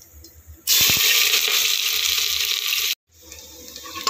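Chopped onion, ginger and green chilli dropped into hot oil with cumin in a steel pot, starting a loud, steady sizzle about a second in. The sizzle cuts off abruptly near three seconds.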